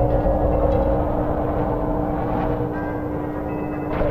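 Cartoon soundtrack: a heavy low rumbling crash right at the start that dies away over about two seconds, with music under it and a steady hum throughout.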